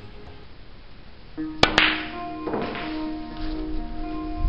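Background music, with two sharp clicks about a second and a half in: a snooker cue tip striking the cue ball, then the cue ball hitting the object ball.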